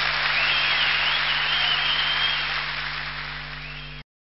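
Audience applause with a high, wavering whistle over it for the first couple of seconds. It fades out near the end and then cuts off abruptly.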